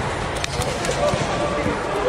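A volleyball bouncing on the indoor court floor, a few short knocks, under players' background chatter.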